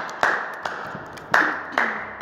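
One person clapping hands alone, about four slow, uneven claps at roughly two a second, each ringing briefly.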